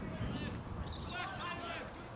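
Players' and spectators' shouts and calls across an Australian rules football ground, loudest about a second in, over a low rumble from wind on the microphone.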